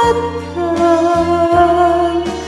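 Woman singing over a karaoke backing track: after a short fall in pitch she starts a new long note about half a second in and holds it steady, with the backing's bass notes pulsing underneath.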